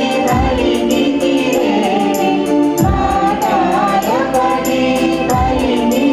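A choir sings a Catholic hymn in Telugu over instrumental accompaniment. A deep drum beat falls about every two and a half seconds, under a fast, even ticking percussion.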